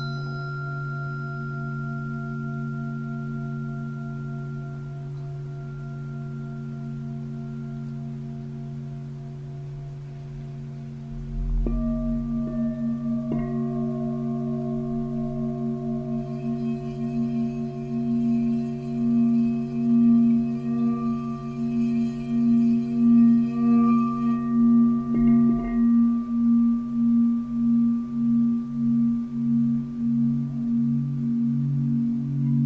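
Several singing bowls ringing in long, overlapping sustained tones. Fresh bowls are struck a little over a third of the way in and again shortly after, and a higher shimmering tone joins around halfway and stops near the end. In the last part the tones waver in a slow, regular pulse.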